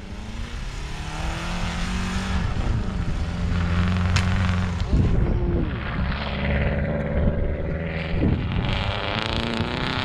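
Rallycross car engine revving hard as the car slides on snow, its pitch climbing and falling again and again as the driver accelerates, lifts and shifts, with a sharp drop in pitch about five seconds in.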